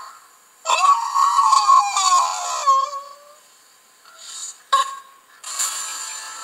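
Television promo audio played through a TV speaker: a voice calls out with a rising and falling pitch, then a sharp click about five seconds in as music starts.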